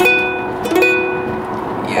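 Ukulele strummed twice, the same unusual chord ringing out each time, the second strum under a second after the first, over steady car road noise.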